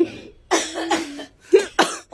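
A person coughing several times: a longer cough about half a second in, then two short, sharp coughs near the end.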